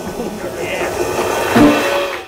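Audience applauding and cheering, with voices mixed into the clapping and a swell near the end.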